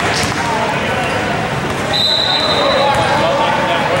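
Voices of players and spectators in a large gym, with a single steady whistle blast lasting about a second, starting about two seconds in.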